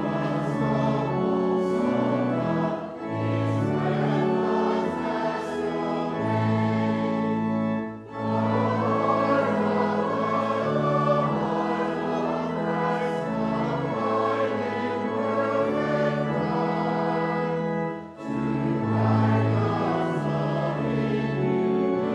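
A congregation sings a hymn together with instrumental accompaniment and steady held bass notes. The sound drops briefly between lines, about 8 seconds in and again about 18 seconds in.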